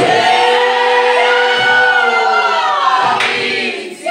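A group of voices singing a worship song together, with long held notes that slide down in pitch and a short break near the end.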